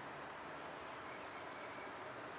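Steady, faint hiss of outdoor background noise with no distinct event.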